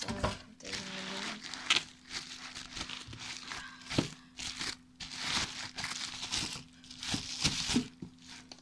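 Plastic bubble wrap crinkling and rustling in irregular bursts as it is handled and pulled open by hand, with a few sharp crackles.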